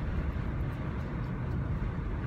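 Steady low rumble of a car heard from inside the cabin, the engine and road noise of a car being driven.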